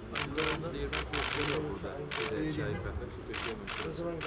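Camera shutters clicking several times in short, irregular bursts, with men's voices talking underneath.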